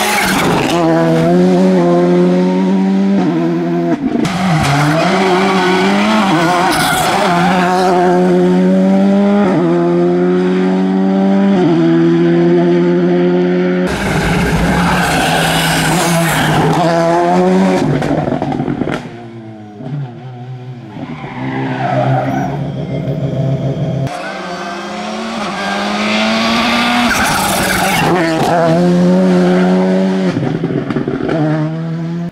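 Volkswagen Polo GTI R5 rally car's turbocharged 1.6-litre four-cylinder engine revving hard at full throttle, its pitch climbing and dropping as it changes gear through the corners, with sharp cracks when the throttle lifts. It is heard on several separate passes.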